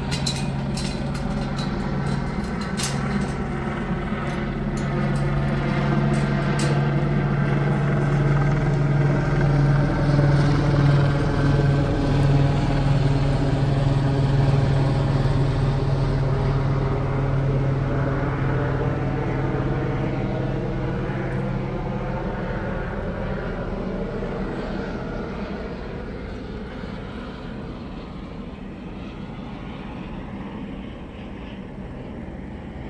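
Helicopter flying overhead: a steady engine and rotor drone that grows louder, is loudest about halfway through, then fades away.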